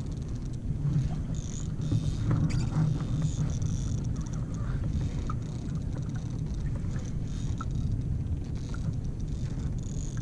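Steady wind rumble on the microphone aboard a fishing kayak, with a faint high whir coming and going every second or two.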